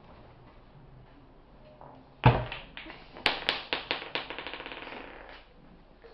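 Plastic clacker-ball toy (bati bati) knocking: one hard knock, then a run of sharp clicks that come quicker and quicker as they fade away.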